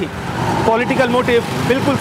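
A small vehicle engine running close by in street traffic, a low, evenly pulsing rumble, with a man's voice over it in the middle.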